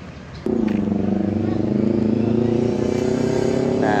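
A vehicle engine running steadily at a constant pitch, cutting in abruptly about half a second in over faint street background.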